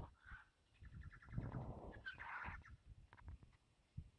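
Faint bird calls: a short chattering run about a second in, then a harsher call around the middle, over low rumbling noise, with a sharp click right at the start.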